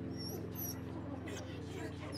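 Short, high-pitched whimpers from a frightened cartoon bulldog, two squeaky cries in the first second, over steady low tones.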